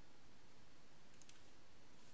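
Faint scratchy click of a paintbrush's bristles against watercolour paper a little past a second in, over a steady low hiss.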